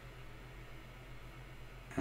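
Quiet room tone: a low, steady hum with a faint hiss, and nothing else sounding.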